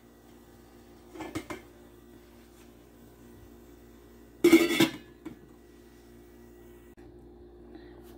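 Stainless steel pot lid clattering against a metal pot: a couple of light clinks about a second in, then one loud clang about four and a half seconds in, with a faint steady hum underneath.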